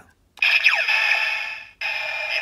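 Bandai DX Den-O Climax Form Ridewatch toy playing its electronic sound effect through its small speaker: a short jingle with falling pitch sweeps. After a brief gap, a new burst of the toy's sound starts near the end.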